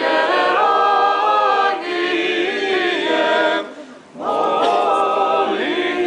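A group of voices singing an Orthodox church hymn a cappella in harmony. There is a short breath pause about two-thirds of the way through before the singing resumes.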